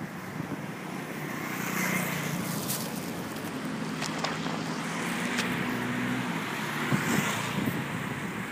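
Street traffic on a town road: a vehicle engine running close by, a steady hum that ends about six seconds in, with wind on the microphone.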